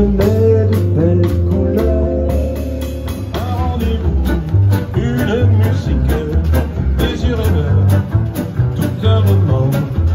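Live swing jazz band playing: acoustic-electric guitar, upright double bass moving from note to note underneath, and a Gretsch drum kit keeping a steady beat on the cymbals.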